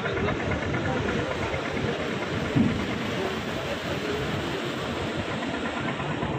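Steady running noise of a river passenger launch under way: its diesel engine, with water and wind rushing past. About two and a half seconds in there is one short, louder falling tone.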